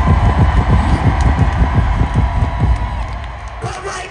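Rapid run of deep bass kick hits through the arena PA, about six a second, each falling in pitch like a hip-hop 808 drum roll; it stops shortly before the end.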